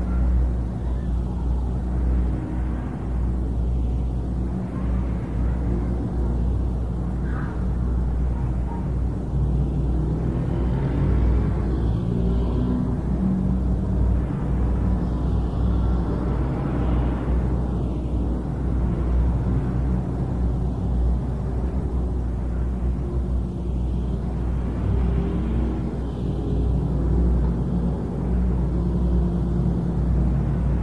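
Steady low electrical hum with a haze of hiss, the background noise of an old tape recording of a quiet room.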